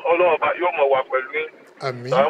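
A man talking, with a thin sound cut off above the middle frequencies, like a voice over a phone line.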